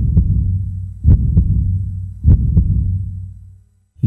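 A heartbeat sound effect: three double thumps (lub-dub), a little over a second apart, over a low hum, fading out near the end.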